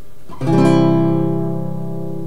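Nylon-string classical guitar: a C major chord strummed once about half a second in and left ringing, slowly fading. It is strummed through to the first string, so the melody note on the second string is not the top note, which is the wrong way to voice it for this melody style.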